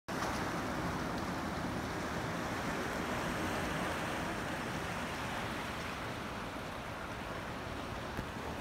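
Small waves washing around shoreline rocks, a steady hiss of surf.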